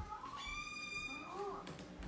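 A door hinge squeaking as a bedroom door is opened: one steady high squeak of about a second.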